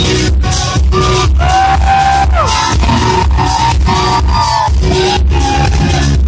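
Live indie rock band playing loud: electric guitars, bass guitar and drums with a steady beat. The heavy bass booms and overpowers the camera's microphone.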